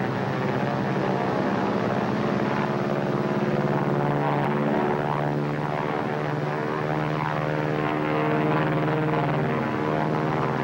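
Piston engines of a propeller-driven bomber droning steadily in flight, with a slight waver in pitch.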